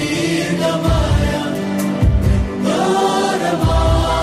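Devotional chant-style music: a group of voices singing over deep drum beats that come about every second and a half.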